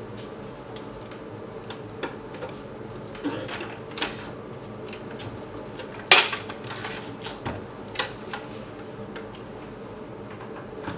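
Scattered light clicks and taps, one sharp click about six seconds in being the loudest, over a faint steady hum.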